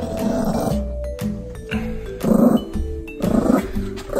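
Pomeranian growling in three short rough bursts over background music.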